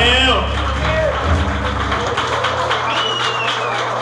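A heavy metal band's closing chord ringing out over drum and cymbal hits, the low bass and guitar notes dying away about two seconds in, with shouting voices over it.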